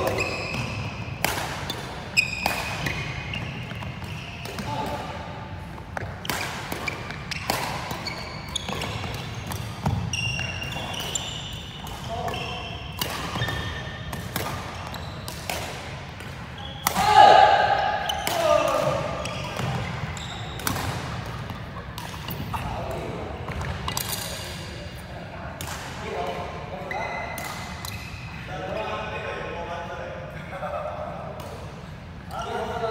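Badminton rally in a large hall: rackets hit the shuttlecock with sharp cracks about once a second, and shoes squeak briefly on the wooden court. Players' voices come in between, loudest in a shout about seventeen seconds in.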